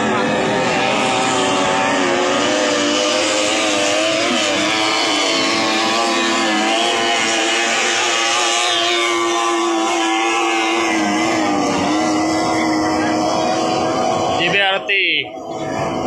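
Racing boats with 30 hp three-cylinder outboard motors running flat out, a loud, steady engine whine with several overlapping pitches that waver slightly. Near the end the sound briefly drops and breaks up.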